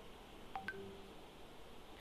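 Two brief, faint electronic beeps about half a second in, the second higher than the first, over quiet room tone on a video call.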